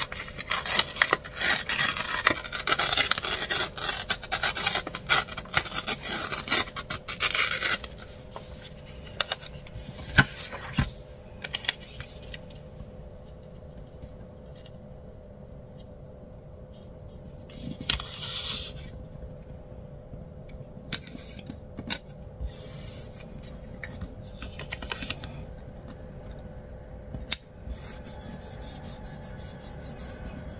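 A paper sticker being worked by hand: a loud, dense rasping rip for about the first eight seconds as the sheet is torn, then quieter rustling and small clicks as the backing is peeled off and the sticker is rubbed down onto a planner page.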